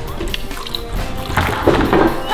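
Water poured from a plastic water bottle into a plastic tub, splashing from a little past halfway, over background music.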